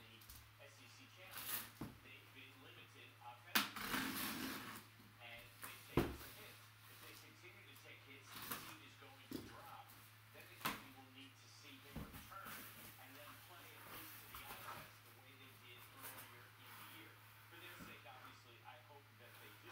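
A taped cardboard box being opened by hand: packing tape slit and pulled along the seam, with scraping and several sharp knocks of cardboard as the flaps are worked open. A steady low hum runs underneath.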